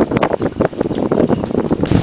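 Wind buffeting the camera microphone outdoors: a loud, uneven rush that keeps rising and falling in gusts.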